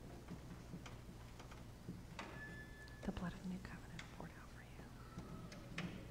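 Faint whispering between people close by, with scattered small clicks and taps, over a steady low hum.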